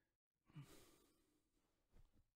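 Near silence, with one faint sigh from a man about half a second in.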